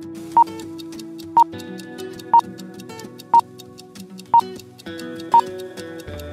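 Countdown-timer sound effect: a short, sharp tick about once a second, six in all, the loudest sound here, over steady background music.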